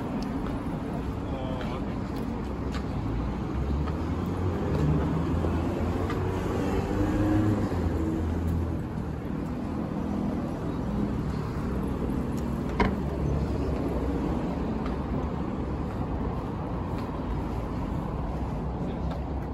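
City road traffic: cars passing with a steady rumble of engines and tyres that swells and eases as vehicles go by. One sharp click about thirteen seconds in.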